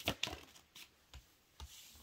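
Tarot cards being handled and drawn from the deck: a few quiet, short clicks and flicks of card stock, the first the loudest.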